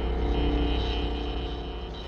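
A steady low drone with several held tones above it, even in level throughout.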